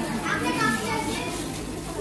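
A child's voice, with a thin plastic bag rustling as it is pulled open by hand.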